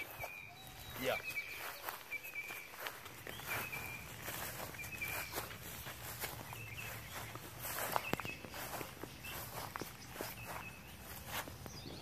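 Faint footsteps of a person walking slowly along a garden row, with short high chirps recurring every second or so in the background.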